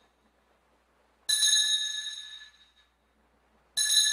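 Altar bell struck twice, about a second in and again near the end, each stroke ringing out with a clear high tone and fading over about a second. The ringing marks the elevation of the chalice at the consecration.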